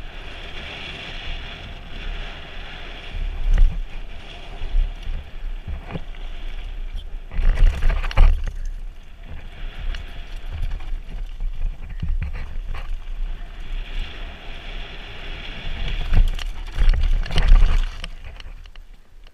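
Trek Remedy full-suspension mountain bike riding fast down a dry, rocky dirt trail: tyres crunching over dirt and loose stones, the bike rattling, and wind rushing over the microphone. Rougher, louder jolts come about three and a half seconds in, around eight seconds in, and again near the end.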